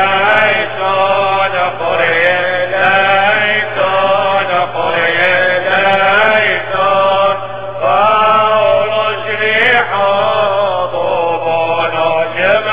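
A man's solo liturgical chant from the Syriac Catholic Mass, sung in short phrases of long, ornamented held notes with brief breaks between them, over a steady low hum.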